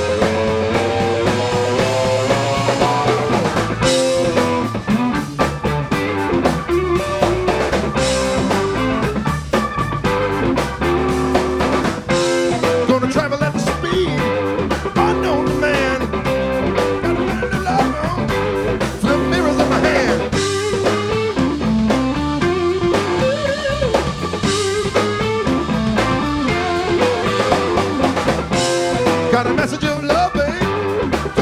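Live band playing: electric guitar, drum kit, electric bass and Hammond organ together, with the guitar's melodic lines out front.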